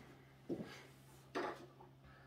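Faint handling noises: two short knocks or rustles, about half a second and a second and a half in, over a steady low hum.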